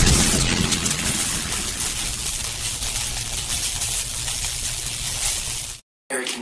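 A steady rushing noise that starts abruptly and cuts off suddenly near the end.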